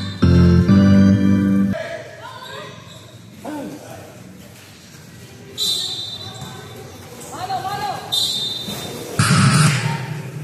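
Music playing over a sound system for the first two seconds, then the sounds of a basketball game: players' shouts and calls, a ball bouncing on the concrete court, and two short, high whistle blasts about six and eight seconds in. A louder burst of noise comes near the end.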